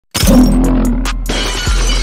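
Glass shattering as a transition sound effect: it starts abruptly just after the beginning, is loudest in the first half second, and breaks into scattered sharp tinkles. Underneath it runs the steady deep bass of a music track.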